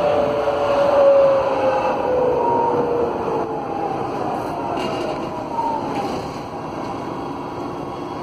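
Interior sound of a GT8N low-floor tram with its original GTO traction inverter and AC traction motors: a whine in several tones that glides down in pitch over steady wheel-on-rail rolling noise, as the tram slows.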